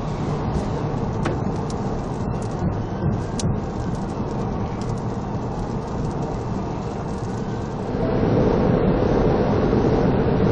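Road, tyre and wind noise inside a police car at over 90 mph on a wet road, with a few sharp ticks of spray on the windscreen. About eight seconds in it changes abruptly to a louder, steadier in-car drone at over 130 mph.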